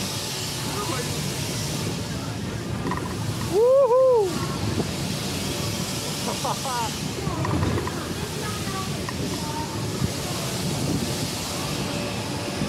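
Air rushing over the camera microphone as a Tagada-style spinning ride turns, with voices in the background. About four seconds in there is a loud whoop that rises and falls.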